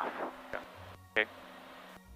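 A man's voice trailing off, then a faint low hum and hiss with one short vocal sound about a second in.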